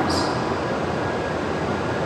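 Hokuriku Shinkansen train running into the station platform: a steady, even rushing noise with no distinct events.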